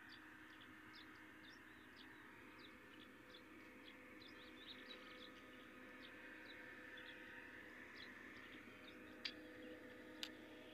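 Faint chirping of small birds, many short separate chirps, over a faint steady hum, with one sharp click about nine seconds in.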